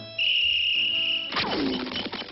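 Cartoon sound effects: a high, steady whistle-like tone held for about a second, then a quick burst with a falling glide.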